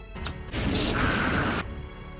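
Butane lighter clicked to ignite, then its flame hissing for about a second while it heats heat-shrink tubing over a wire splice, cutting off suddenly.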